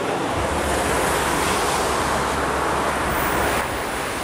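A loud rushing noise with a low rumble under it, swelling for a few seconds and easing near the end.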